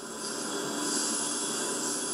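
Steady rushing street background noise with a high hiss that swells about halfway through and eases off near the end.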